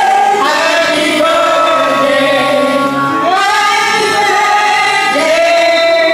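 A group of men and women singing a birthday song together, with long held notes that step to a new pitch every second or two.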